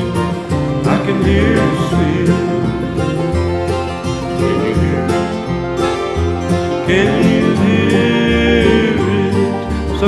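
Bluegrass band playing an instrumental passage: acoustic guitar and banjo over a steady bass pulse, with a long wavering high note about seven seconds in.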